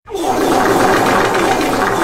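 A sudden, loud, harsh distorted noise that bursts in out of silence just after the start and stays dense and rattling throughout: the blaring punchline that cuts off the soft song.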